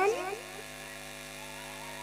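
A voice over the stage loudspeakers breaks off. Then only the PA system's steady electrical mains hum and buzz remains.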